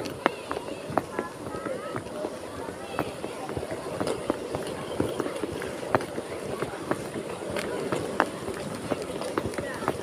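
Footsteps of someone walking on paving, with scattered sharp clicks and unclear voices in the background.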